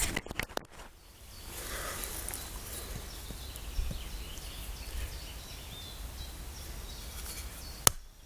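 Quiet forest background with faint small-bird chirps, a few sharp handling clicks in the first second. Just before the end comes one sharp knock: a wooden baton striking the spine of a knife blade set into a stick to split it.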